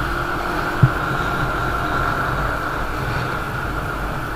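Motorcycle riding noise heard from a camera on the moving bike: a steady drone of engine, tyres and wind, with a short loud blip just under a second in.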